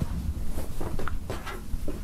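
A cotton T-shirt being handled and spread out on a wooden table: soft rustling and brushing of the fabric, over a low steady hum.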